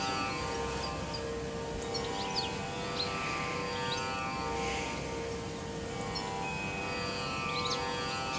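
Soft background music: a steady sustained drone with light, short high notes sounding over it now and then.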